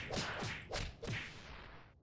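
Logo-animation sound effects: about four quick whip-like swishes in the first second or so, each dropping in pitch and each softer than the last, fading away.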